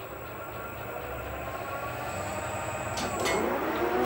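Geared metal lathe spinning up, its gear whine growing steadily louder, with a couple of sharp clicks about three seconds in.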